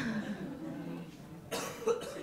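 People chuckling, with a short sharp burst of breath about one and a half seconds in.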